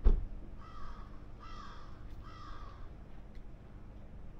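A crow cawing three times, each caw about half a second long, over a low steady rumble, after a sharp thump at the very start.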